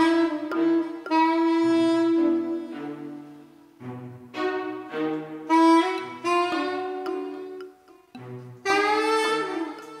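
Soprano saxophone playing slow improvised phrases with long held notes, over a backing of sustained low notes that change every second or so.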